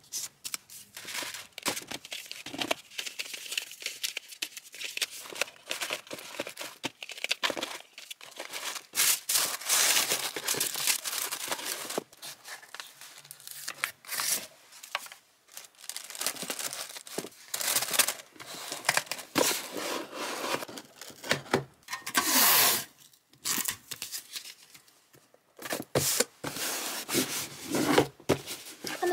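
Tissue paper crinkling and rustling while a cardboard mailer box is packed and closed, with stickers peeled off their backing sheet. Irregular papery rustles and light taps run throughout, and the loudest burst of crinkling comes about two-thirds of the way in.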